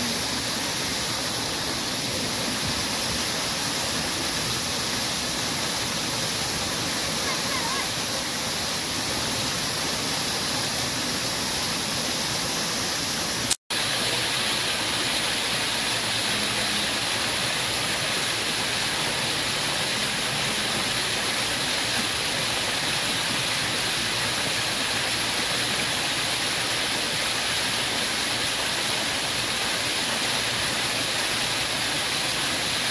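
Several fountain water jets spraying up and splashing down into a shallow pool, a steady rushing hiss of falling water. The sound drops out for an instant a little under halfway through, then carries on unchanged.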